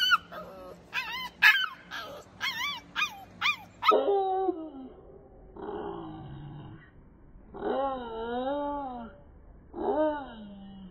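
Pit bull puppy howling. A quick run of short, high yips and whines comes first, then, about four seconds in, longer, lower howls with a wavering pitch, one after another.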